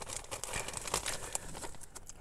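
Faint, irregular crisp crackles of ridged potato chips being crunched and handled.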